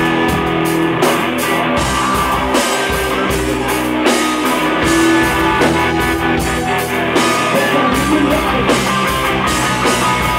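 A rock band playing live through an instrumental passage with no vocals: electric guitar and drum kit keep a steady, loud groove.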